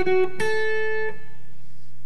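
Electric guitar (Fender Stratocaster) tuned down a half step: a note on the B string's eighth fret cuts off, then about half a second in a single picked note on the high E string's sixth fret rings and fades away. A steady low amp hum runs underneath.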